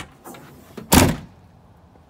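Rear liftgate of a 1997 Nissan Pathfinder slammed shut: one heavy thud about a second in.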